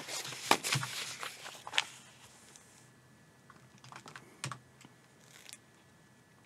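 Sheets of paper being handled and shuffled at a desk: a quick run of rustles and taps over the first two seconds, then a few faint clicks.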